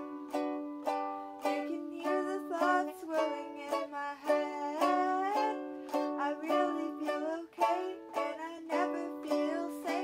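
Ukulele strummed in a steady chord pattern, about two strums a second. A wavering voice line rises and bends over the chords in the middle.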